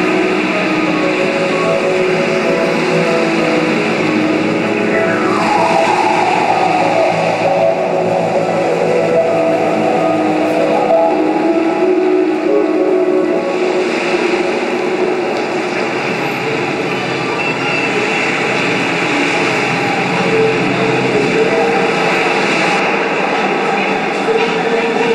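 Electronic computer music playing over loudspeakers: a dense, continuous layered texture of sustained tones and rumbling noise, with a falling pitch sweep about five seconds in.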